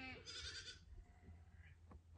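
A goat bleating faintly: one wavering call lasting about a second at the start.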